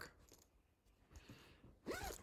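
Near silence, with a faint rustle and a few light ticks about a second in.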